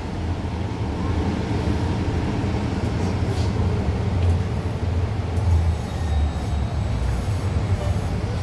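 Cabin noise inside a Nova Bus LFS hybrid-electric city bus: a steady low rumble from the drivetrain and running gear.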